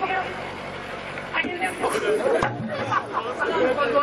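Speech from the stage, amplified through a PA, with chatter.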